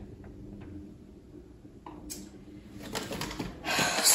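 Quiet handling sounds on a kitchen counter: a few light clicks, a brief rustle a little after two seconds, then quick taps and rustling that grow louder near the end, as spice containers and a seasoning packet are handled.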